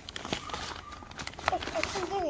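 A child rummaging in a gift bag: rustling with a run of small clicks and taps as items are pulled out, and a brief voice sound near the end.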